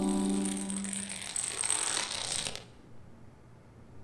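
A long chain of dominoes toppling on a concrete floor: a rapid, dense clatter of small clicks that stops abruptly about two and a half seconds in.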